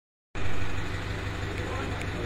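An engine idling: a steady low hum with a fast even pulse, cutting in abruptly a moment in, with people's voices underneath.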